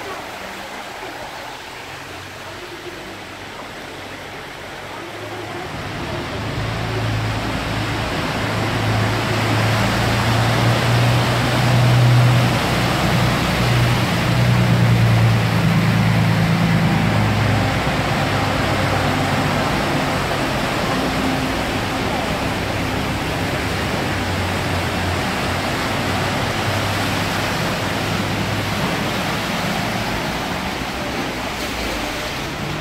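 Floodwater rushing steadily across a flooded road, with vehicles wading through it. From about six seconds in, a city bus's engine hums low and grows louder, peaking around the middle, together with the wash of water pushed aside by the wheels.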